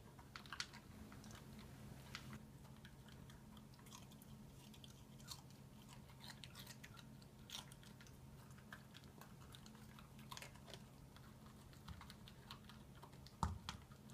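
Small dog eating from a plastic slow-feeder bowl: faint, scattered chewing and crunching, with small clicks of food and teeth against the plastic over a low steady hum, and one louder knock near the end.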